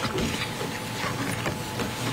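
A run of irregular small clicks and rustling picked up by the lectern microphones, over a faint steady hum.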